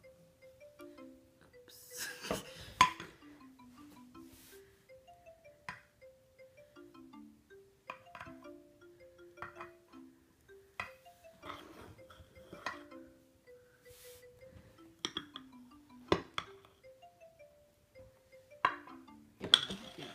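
Background music: a light, simple melody of short notes. Now and then there are clinks and scrapes of metal knives on a glass baking dish as frosting is spread, with a louder cluster of clatter a couple of seconds in.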